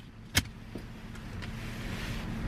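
A single click, then a car's power window motor running with a steady hum that grows slowly louder.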